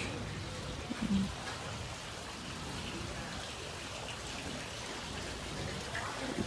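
Steady hissing outdoor background noise, with a brief voice sound about a second in.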